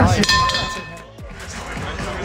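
Boxing ring bell rung once: a short metallic ring of under a second, signalling the end of the round.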